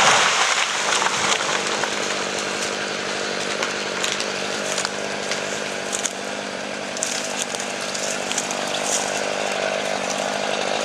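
Chainsaw running steadily at part throttle, its constant engine note over a broad buzz; a loud rush of noise at the very start dies away within about a second.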